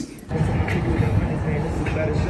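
Outdoor city street noise: a dense traffic rumble with wind buffeting the phone's microphone, cutting in abruptly a moment after a short quiet gap.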